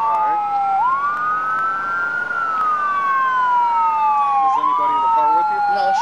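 Two emergency-vehicle sirens wailing at the same time, out of step with each other. Each rises and falls slowly in pitch, taking several seconds per sweep.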